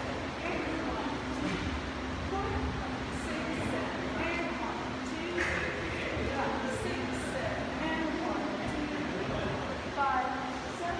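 Indistinct voices over a steady low hum and rumble.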